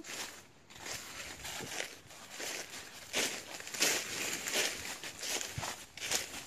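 Footsteps crunching through a thick layer of dry fallen leaves: an uneven series of crackling steps, loudest about three to five seconds in.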